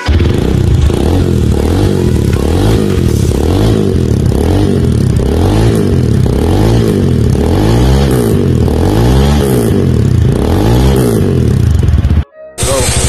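Rusi Titan 250FI motorcycle engine being revved while standing, through a black aftermarket slip-on exhaust muffler. The throttle is blipped over and over, about once a second, each rev rising and falling in pitch above the idle.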